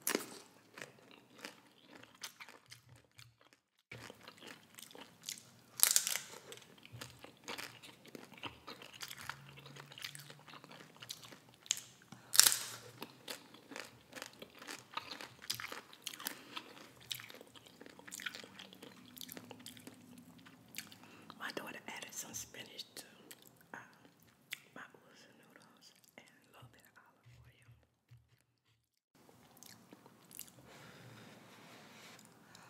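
Close-miked eating: crunching bites of tortilla chips softened in instant noodle broth, then chewing and mouth sounds. The loudest crunches come about six and twelve seconds in, with steady smaller crackles of chewing between and a brief pause just before the end.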